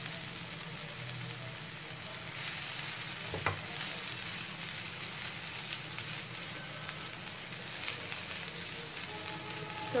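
Onions, green chillies and shredded boiled chicken sizzling in oil in a nonstick frying pan while a silicone spatula stirs them, a steady sizzle with scraping. One short knock comes about three and a half seconds in.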